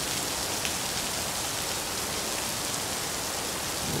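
A steady, even hiss with faint scattered ticks throughout, with no music or tune in it.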